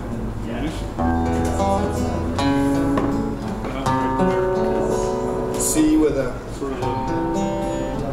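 Acoustic guitar being played, with chords ringing out and new chords struck about a second in and again around two and a half and four seconds.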